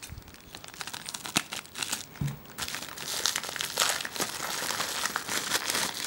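Plastic mailing envelope crinkling and crackling as it is handled and opened by hand, getting denser and louder from about halfway through.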